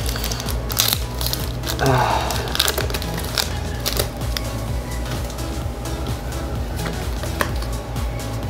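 Foil booster-pack wrapper crinkling as it is torn open and the cards are slid out of it, a string of short crackles over steady background music.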